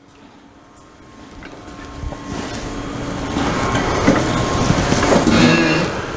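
Wheels of a hand-pushed drum depalletizer trolley rolling across a smooth warehouse floor under a full drum, with its steel frame rattling. The rumble builds steadily from about a second in, with a few knocks near the end.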